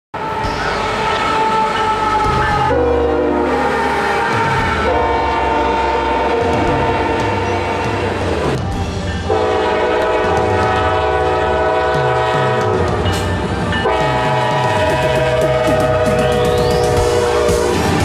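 Diesel locomotive air horns sounding a series of long blasts with short breaks between them, over the rumble and rail clatter of a passing freight train.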